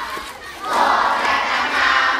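Many children's voices singing together as a group, growing much louder and fuller about two-thirds of a second in.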